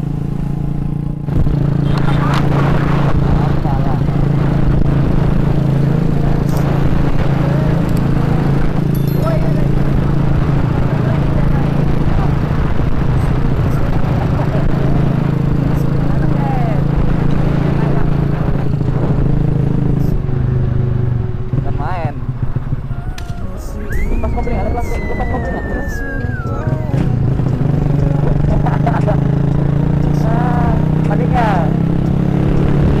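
Honda Astrea Grand's small single-cylinder four-stroke engine running at a steady riding pace. The revs drop about twenty seconds in and build again a few seconds later.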